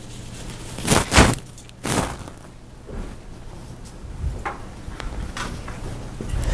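Handling and movement noise in a classroom: two loud, short rustles about one and two seconds in, then a few softer knocks and rustles, over a steady low hum.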